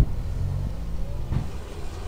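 A motor vehicle's engine running with a low, steady rumble, and a faint knock about a second and a half in.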